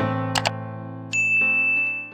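Subscribe-button pop-up sound effect over soft piano background music: two quick mouse clicks about half a second in, then a held, bell-like ding starting about a second in.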